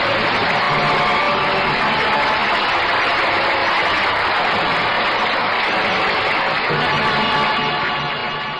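Orchestral closing music of a 1951 radio drama, played loud and steady with a dense, full sound, marking the end of the play.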